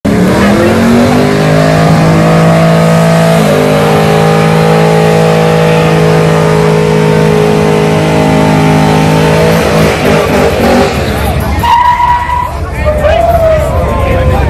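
A car doing a burnout: the engine is held at steady high revs while the tyres squeal. The pitch steps up slightly a few seconds in, and the sound drops away about ten seconds in, leaving crowd noise and a few short squeals.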